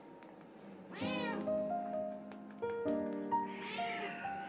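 A domestic cat meowing twice: a short meow about a second in and a longer one near the end. Piano music plays underneath.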